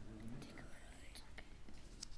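A faint, breathy whispering voice close to a microphone, with a few soft clicks.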